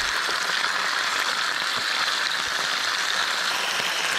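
Seal ribs and meat frying in hot vegetable oil in a pan: a steady sizzle.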